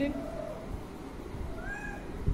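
A cat meowing, with a faint, short rising meow near the end.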